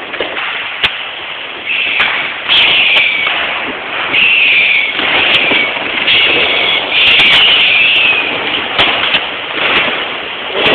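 New Year's fireworks and firecrackers going off: a dense run of sharp bangs over a constant crackle. From about two seconds in, several longer hissing bursts come in and the whole thing gets louder.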